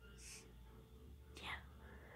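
Near silence: a short breathy hiss, then a softly spoken "yeah" near the end.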